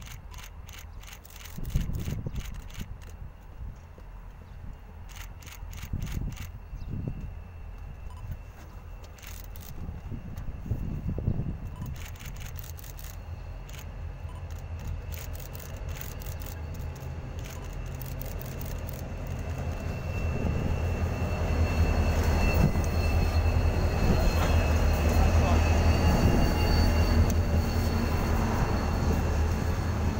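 Two Victorian C-class EMD diesel-electric locomotives hauling a passenger train into the station. Their low diesel rumble builds from faint to loud over the second half, with a thin high squeal above it in the last seconds.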